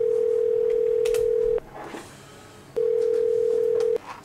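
Telephone ringing tone: a steady electronic tone, on for about two seconds, a pause of about a second, then starting again.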